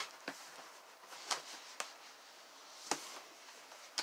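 Large cardboard shipping box being opened by hand: flaps and cardboard being lifted and flexed, with several sharp snaps and clicks.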